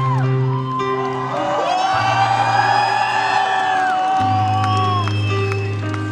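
Arena crowd cheering and whooping over low, sustained keyboard chords that change about every two seconds.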